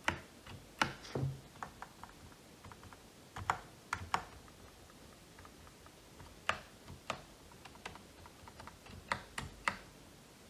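Mechanical keyboard's large stabilized keys being pressed one at a time, a dozen or so sharp clacks at an uneven pace, some in quick pairs. The stabilizers have just been lubed with dielectric grease around the wire to stop them rattling.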